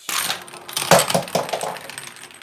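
Mighty Beanz, small hard plastic bean capsules, clattering and tumbling down a plastic race track after being slammed out of the launcher: a rapid run of small clicks and knocks, loudest about a second in.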